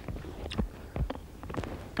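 A few short, soft knocks and rustles, about half a second apart, from a man crouching and handling bait tins on a lake bank.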